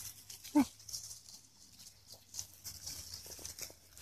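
Dry fallen leaves rustling and crackling under running puppies and footsteps: a scatter of small, light crackles throughout.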